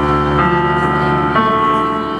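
Live band music led by a Korg electric keyboard playing sustained chords that change about once a second.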